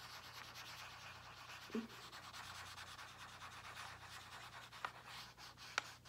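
Felt-tip marker scribbling on a paper worksheet in rapid back-and-forth strokes, colouring in a drawing; faint and scratchy.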